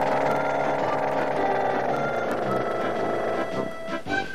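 Forklift motor sound effect: a steady mechanical whine as the load is lowered, under background music, fading out shortly before the end.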